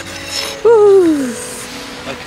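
A person's voice letting out one loud wordless cry that slides down in pitch, over faint background music.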